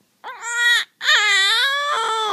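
Infant's loud, high-pitched vocal play: a short squeal about a quarter second in, then a longer drawn-out one from about a second in that slides slightly down in pitch. It is a baby trying out her voice, not crying.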